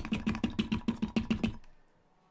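A fast, even run of light taps, about nine a second, stopping about a second and a half in.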